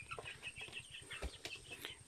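Faint, scattered peeps and clucks from young native chickens, with a soft low knock about halfway through.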